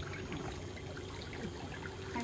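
Electric nail drill (e-file) with a cone-shaped bit running with a steady hum while it is worked against a thickened ram's horn big toenail, with faint scratchy contact sounds.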